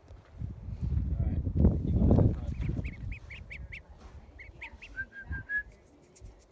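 Ducklings peeping: a run of short, high peeps from about halfway through, then four quicker, slightly lower peeps near the end. Before the peeps, a low rumbling noise fills the first couple of seconds.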